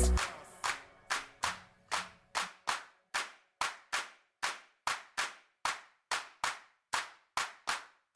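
A dancehall riddim drops out almost at once, and the rest is a bare break of sharp electronic clap hits, about two to three a second in a syncopated pattern, each with a short bright tail.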